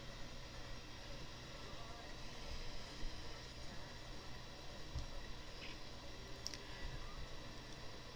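A few faint, scattered clicks over low steady room hiss, from working a computer while editing.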